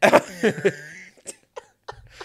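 Laughter: a burst in the first second, trailing off into a few short breathy bits.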